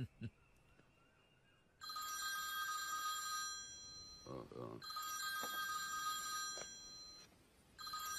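Telephone ringing with an electronic ring: two long rings, each about two seconds, then a third starting near the end, as an incoming call waits to be answered.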